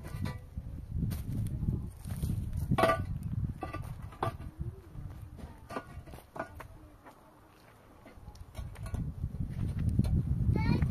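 Hollow concrete blocks being set by hand on a dry-stacked block wall: scattered short knocks and scrapes of block on block, with a quieter stretch about three-quarters of the way in.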